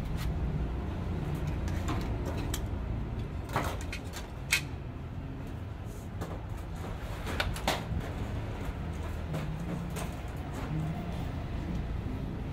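Short, scattered clicks and knocks of laser printer parts being handled and set down on a steel table, the sharpest about four and a half seconds in, over a steady low background rumble.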